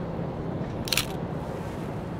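iPhone 14 Pro camera shutter sound: one short, sharp click about a second in, as a photo is taken. A steady low city hum sits beneath it.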